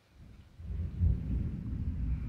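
Thunder rumbling low, swelling about half a second in and rolling on.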